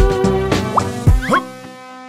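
Bouncy children's background music with two quick rising cartoon 'bloop' plop effects, like drops landing in a cup: one about halfway through and one just past a second in. Near the end the music thins to a quieter held chord.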